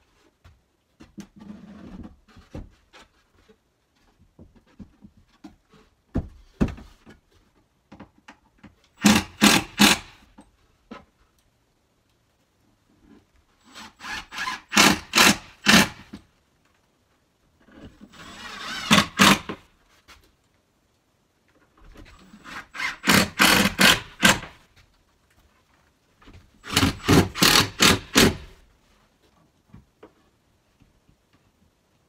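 A power drill-driver driving screws through a plywood cabinet into the van's plywood-lined wall: five runs of about one and a half to two seconds each, each growing louder and then stopping. Before the first, light knocks and rubbing as the cabinet is handled into place.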